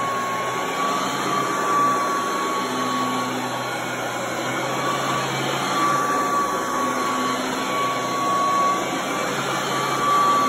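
Vintage Royal 993 upright vacuum cleaner running steadily while pushed back and forth over carpet. A high whine in its running sound fades in and out every second or two.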